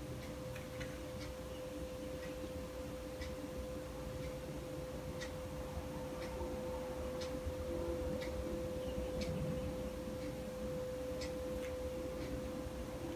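Quiet room tone: a steady low hum with faint, regular ticks about once a second.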